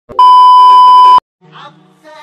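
Loud, steady test-tone beep, about a second long and cutting off suddenly: the tone that goes with TV colour bars, used here as a transition sound effect.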